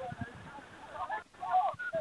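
Faint, distant shouted calls from rugby league players across the field, clearest in the second half.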